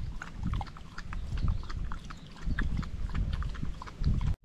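Dog lapping milk from a cut-down plastic container: a quick, irregular run of wet laps and small clicks, over an uneven low rumble.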